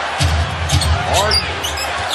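A basketball being dribbled on a hardwood arena court, with short sneaker squeaks about a second in, over a loud, pulsing low arena background.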